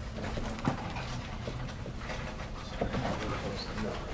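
Dry-erase marker writing on a whiteboard: faint scratches and a few short taps over steady room noise.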